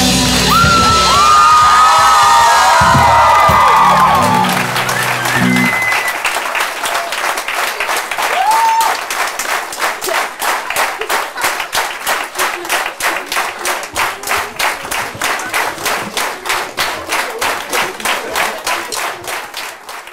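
A live band's final chord rings out with audience cheering over it, then stops about five seconds in. The audience's applause then settles into steady rhythmic clapping in unison, a little over two claps a second.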